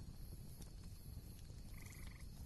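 A faint, low background rumble, with a brief faint pulsed chirp near the end.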